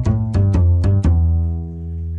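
GarageBand bass guitar sound on an iPad, played from a MIDI keyboard: a quick run of low plucked notes, the last one held and slowly fading near the end.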